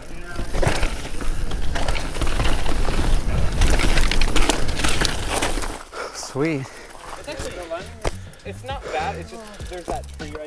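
Devinci Wilson downhill mountain bike riding fast over dirt: tyre noise, chain and frame rattle and wind on a GoPro microphone, loud for about the first six seconds, then dropping away as the bike slows. Background music with a stepping bass line and wavering melody notes plays through.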